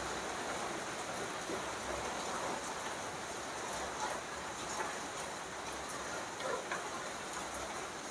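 Steady faint background hiss with a few soft ticks, in a pause with no speech.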